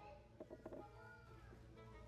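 Near silence: faint background with a few faint pitched sounds.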